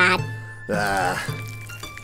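A woman's cartoon voice laughing briefly, about halfway through, over steady background music.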